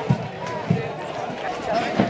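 A drum beating a slow, steady marching pulse, about one beat every 0.6 seconds, with people talking around it.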